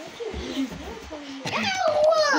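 A child's high-pitched, wordless squeals and whines that glide up and down in pitch, getting louder and higher about one and a half seconds in.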